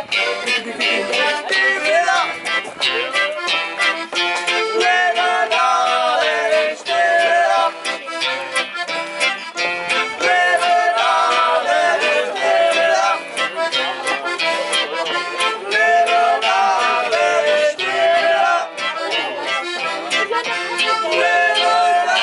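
Live acoustic band music led by a piano accordion, with a nylon-string guitar and a double bass, playing a reggae tune with a steady beat.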